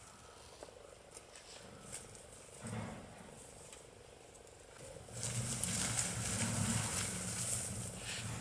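Leafy shrub branches rustling as a hand reaches into the bush and pulls a kitten out, starting about five seconds in and running on steadily, with a low steady sound under the rustle. Before that there are only faint sounds and one short low noise.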